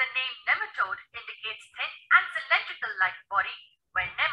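Speech only: a narrator talking steadily, with a thin, telephone-like tone.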